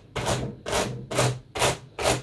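A small wooden-backed packing brush stroked repeatedly down over merino wool fibres on a blending board's fine wire carding cloth, combing the fibres in between the teeth. Four brushing strokes, about two a second.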